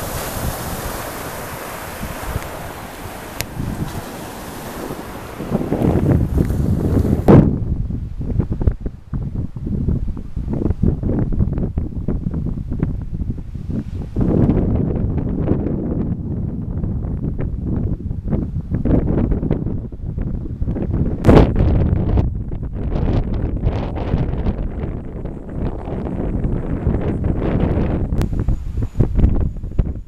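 Ocean surf washing onto a flat beach, with wind over it. About seven seconds in the sound changes to gusting wind buffeting the microphone, a heavy uneven rumble that lasts the rest of the time.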